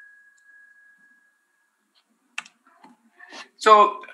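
A quiet pause broken by a single sharp computer click about two and a half seconds in, the click that advances the presentation slide. A faint thin high tone fades out during the first second or two.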